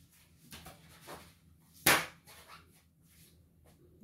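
A sheet of drawing paper being handled on a tabletop: a few soft rustles, then one sharp knock about two seconds in.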